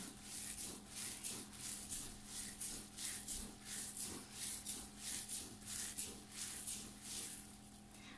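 Bare hands kneading a moist bulgur çiğ köfte mix, rubbing it against a dimpled stainless steel tray in repeated scraping strokes, about two to three a second. This is the kneading stage that works the bulgur until it soaks up the lemon juice.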